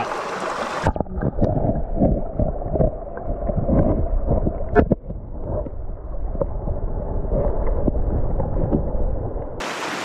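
Mountain stream water heard with the microphone underwater: after about a second of open rushing water the sound turns muffled and dull, a low rushing and gurgling with scattered knocks and one sharp click just before the midpoint, then opens up again just before the end.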